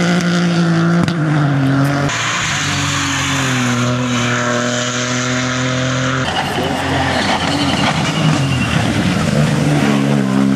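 Ford Fiesta rally car's engine running hard at high revs as it drives a stage, over a hiss of tyres on wet tarmac. The sound changes abruptly twice, about two seconds in and about six seconds in. From about six seconds in the engine note is fainter under a rougher noise.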